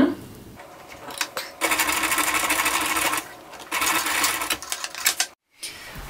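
Sewing machine stitching the overlapped elastic ends of a leather baby shoe, in two runs of rapid needle strokes about a second and a half each, with a short pause between.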